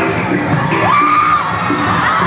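Live Latin pop band playing loudly on stage, heard from amid the audience. About a second in, a voice whoops, rising to a high held note for about half a second.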